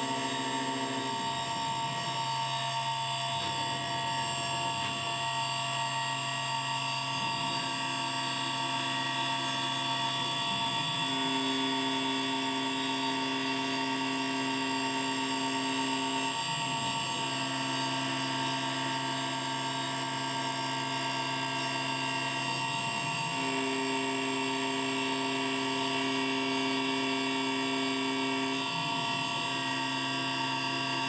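Langmuir Systems MR-1 CNC mill cutting an aluminum test part with an end mill under mist coolant. A steady high whine of several tones runs under a lower hum that steps up and down in pitch every five or six seconds, with a brief glide at each change.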